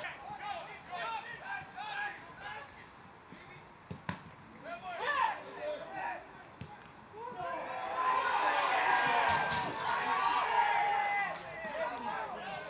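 Pitch-side sound of a football match: players shouting to each other, with sharp thuds of the ball being kicked. From just past halfway a louder burst of shouting and cheering from players and bench as a goal goes in, dying down near the end.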